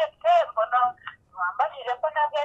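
Speech only: a voice in a phone conversation with a thin, telephone-like sound, with a short pause in the middle.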